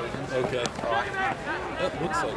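Several voices of sideline spectators and players calling out and talking over one another, with one brief sharp knock about two-thirds of a second in.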